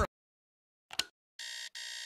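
Electronic alarm clock beeping: two steady, even-pitched beeps separated by a brief gap, after a short blip about a second in.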